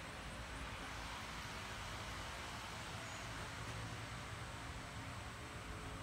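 Faint, steady outdoor background noise: an even hiss with a low hum under it, and no distinct sounds.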